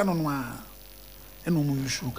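A man's voice drawn out on one falling syllable, then a pause of about a second in which a steady electrical mains hum is heard, then his voice again near the end.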